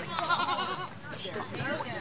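A goat bleats once, a quavering call lasting most of a second near the start, with people talking afterwards.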